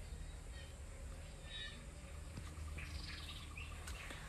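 Quiet garden ambience with a few faint, short bird chirps over a low steady hum, and a light click near the end.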